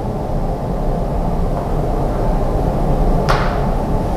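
Steady low rumble of room noise picked up by a clip-on microphone during a pause in speech, with a brief hiss about three seconds in.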